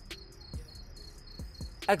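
Crickets chirping in a steady, even pulse, about five chirps a second, with a few soft low thumps. A man's voice starts near the end.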